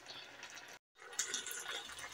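Faint sizzling of potato chips in sauce in a frying pan, with a few light taps of a wooden spoon being stirred through them. The sound drops out completely for a moment just before a second in.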